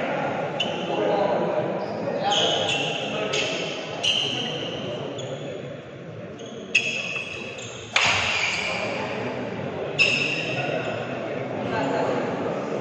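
Badminton rally on an indoor court: three sharp racket strikes on the shuttlecock in the second half, and athletic shoes squeaking in short high pitched chirps on the court floor, over the chatter of spectators in the echoing hall.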